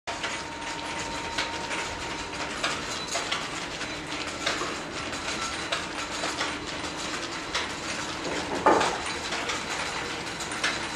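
Irregular mechanical clicking and knocking, like a working mechanism or tools being handled, over a steady background hum, with one louder knock about nine seconds in.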